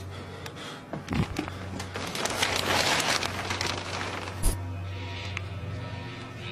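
Low droning ambient music bed with a swell of hissing noise in the middle, scattered clicks, and one sharp click about four and a half seconds in.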